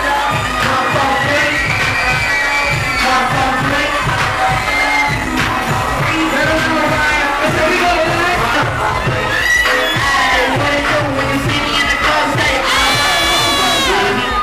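Loud live hip-hop music with a steady beat, over a crowd cheering and singing along.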